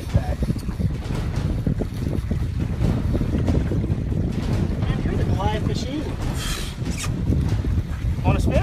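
Wind buffeting the microphone on a small boat out on open water, a steady low rumble, with faint voices in the background and a short hiss about six seconds in.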